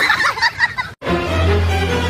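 A rapid, warbling call like a turkey's gobble, cut off abruptly about a second in; a steady low droning tone with overtones follows.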